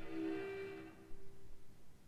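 Soft pitched notes from a piano trio of violin, cello and piano die away within about a second and a half and leave near silence.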